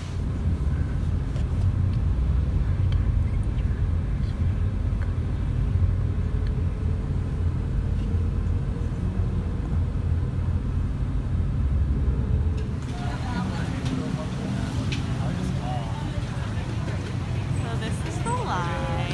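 Steady low rumble of road noise heard inside a moving taxi's cabin. About two-thirds of the way through it gives way to the lighter, busier sound of a crowded street with faint voices.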